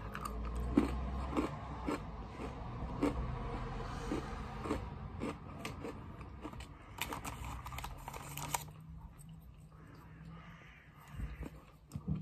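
A Fox's chocolate Party Ring biscuit being bitten and chewed close to the microphone: irregular crunches through the first few seconds and again about seven to eight seconds in, then softer chewing.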